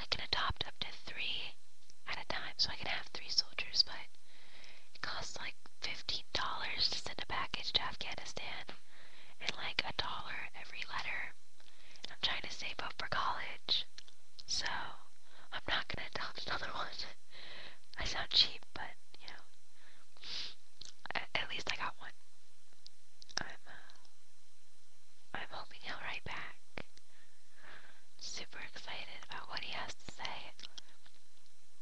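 A person whispering in short phrases with brief pauses between them.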